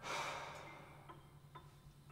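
A man's heavy sigh: one breathy exhale right at the start that fades away within about half a second, over a low steady hum.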